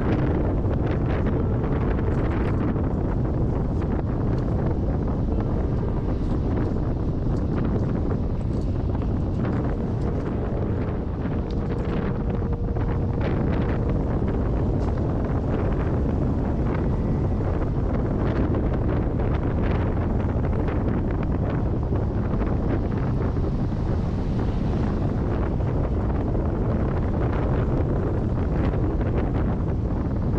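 Wind buffeting the microphone and road rumble from a car driving along a paved mountain road, with many small clicks scattered through the steady noise.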